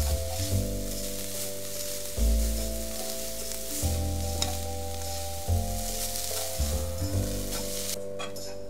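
Thinly shredded dried squid sizzling as it is stir-fried in a sweet and salty seasoning in a frying pan, with background music over it.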